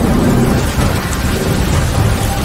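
Steady rain-and-thunder ambience: a continuous wash of rain-like noise over a low, rolling rumble.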